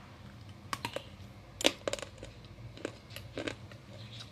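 Slate pencils clicking against one another as a hand picks through a cardboard box of them: a scattered series of light, dry clicks, the loudest a little after one and a half seconds in.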